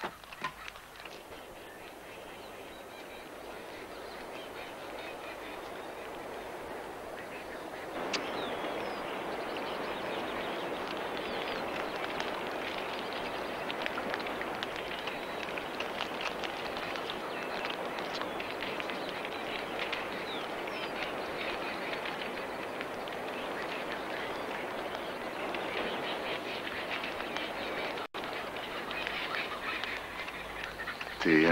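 A flock of birds calling in a dense, steady chorus, stepping up in loudness about eight seconds in.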